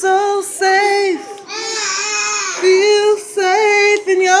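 A cappella singing voice holding a run of short wordless notes on much the same pitch, with one longer, breathier note in the middle.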